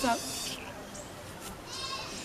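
The tail of a woman's spoken word, then faint outdoor background noise with a brief high chirp near the end.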